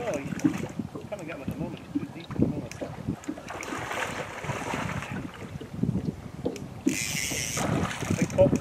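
River water splashing as a hooked salmon thrashes at the surface close to a wading angler. The splashing is heaviest about halfway through, with a second, sharper burst near the end, over wind rumbling on the microphone.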